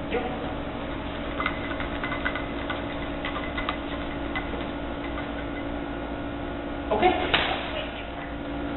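A steady hum with faint scattered clicks, then a brief louder burst, likely a voice, about seven seconds in.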